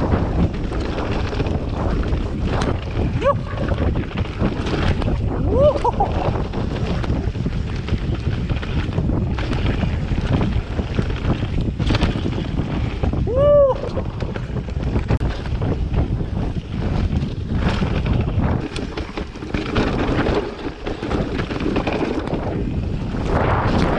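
Wind buffeting the microphone over the rumble of mountain-bike tyres rolling fast on a dirt and leaf-litter trail, with the bike rattling over bumps. Three short pitched sounds rise and fall, one about 3 seconds in, one about 6 seconds in and a louder one about halfway through.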